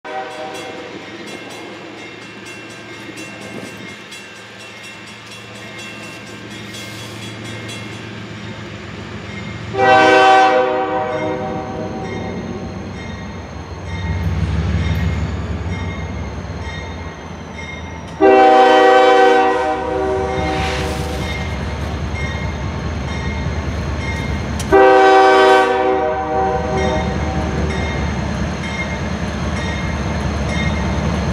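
Diesel freight locomotive's five-chime air horn (a Nathan K5HL on a CSX GE ES40DC) sounding three blasts: a short one about ten seconds in, a longer one about eighteen seconds in, and a short one about twenty-five seconds in. Under the horn, the rumble of the slow-moving lead locomotives grows steadily as they approach.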